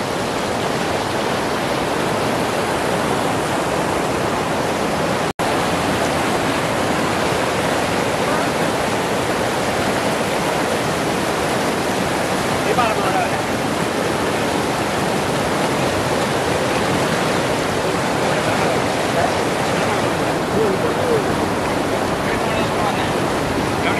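River rapids rushing over rocks: a steady, dense roar of white water, with one momentary drop-out about five seconds in.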